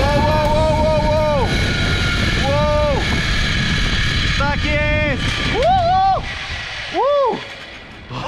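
A man yelling in long wordless whoops, about five calls with the first held longest, over heavy wind rushing on the helmet camera's microphone during a fast zip-line descent. The wind noise drops away near the end as the ride slows toward the landing.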